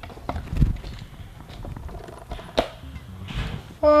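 Camera handling noise: irregular knocks, clicks and rustles as a handheld camera is moved about and set down, with one sharper click about two and a half seconds in. A voice starts calling out loudly right at the end.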